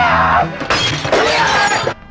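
Film soundtrack excerpt: music with loud crashing and shattering, in two bursts with a short break about half a second in, cutting off abruptly at the end.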